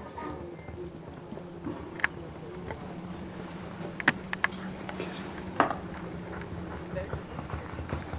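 Faint outdoor arena background: a steady low hum with a few scattered sharp clicks about 2, 4 and 5.5 seconds in.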